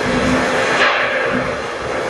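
Thunder rumbling low over the steady hiss of heavy rain, with a swell about a second in.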